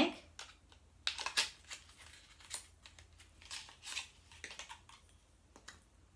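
Faint, irregular clicks and taps of an eyeliner pencil being slid out of its slim package and handled.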